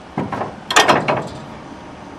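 Clutch handle on a Morbark waste recycler being thrown over: a short metallic clunk, then a louder clanking rattle of the lever and its linkage about three-quarters of a second in.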